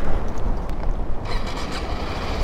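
Kawasaki Ninja 125's single-cylinder engine idling with a steady low rumble, mixed with wind buffeting the microphone.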